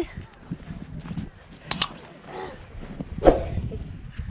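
Children's voices outdoors with a short loud cry near the end, and two quick sharp clicks about halfway through.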